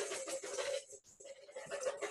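Wire whisk beating egg whites by hand in a bowl: rapid, light clicking of the wires against the bowl, with a short lull about a second in. The whites are at the soft, foamy stage.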